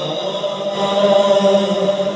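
A man's voice chanting an Urdu naat into a microphone, drawing out long held notes.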